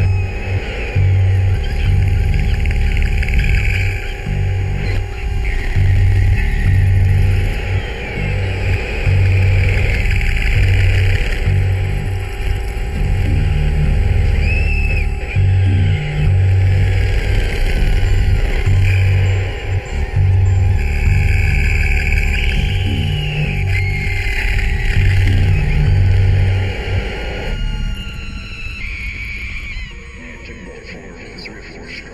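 Electronic track: a pulsing deep bass pattern under a steady droning tone, with high gliding, squealing synth sounds above it. Near the end the bass and drone drop out and the music gets quieter.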